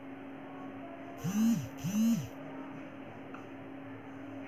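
Whiteboard marker squeaking twice against the board during writing strokes, each squeak under half a second with its pitch rising and then falling.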